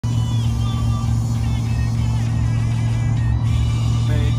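Steady low drone of a car's engine and tyres heard inside the cabin while driving, with a song playing more quietly over it on the car radio, tuned to a country station.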